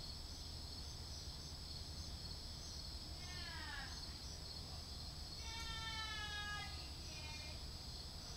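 Night insects, crickets, chirping steadily in a high, pulsing chorus. Over it come three distant drawn-out cries that fall in pitch: a short one about three seconds in, a longer one of over a second in the middle, and a brief one near the end.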